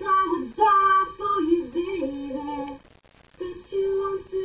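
A woman singing a cappella, a single voice holding and moving between sustained notes, with a short pause for breath about three seconds in.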